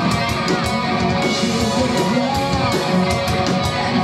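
Live metal band playing: electric guitars and a drum kit, with frequent, regular drum and cymbal hits.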